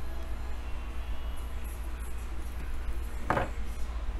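A steady low electrical hum, with faint small clicks and rustles of a cable and small cutters being handled. A brief, sharper sound comes a little over three seconds in.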